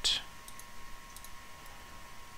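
A few faint computer mouse clicks over low room noise, with a thin steady whine in the background.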